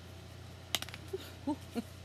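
A low steady hum with one sharp click about a third of the way in and a few faint short sounds after it, as a plastic lotion bottle is handled.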